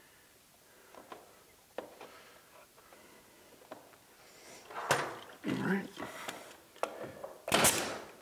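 Crown molding being handled and fitted at an outside corner: a few small taps and clicks, a thump about five seconds in, and a short, sharp knock near the end, the loudest sound, with some brief muttering between.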